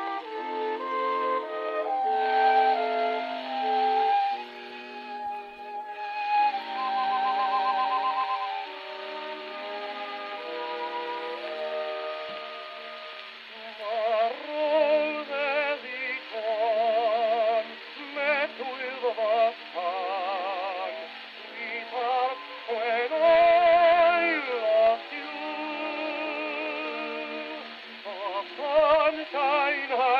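Acoustic-era Coliseum 78 rpm shellac record playing on an HMV Model 157 gramophone, thin in tone with no bass or treble. An instrumental introduction runs for the first part, then a man starts singing with a strong vibrato about halfway in.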